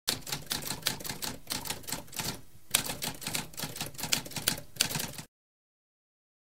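Typewriter typing: a quick run of keystroke clacks with a short lull about halfway, stopping suddenly a little after five seconds in.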